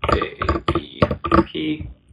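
Computer keyboard typing: a quick run of about ten keystrokes, stopping near the end.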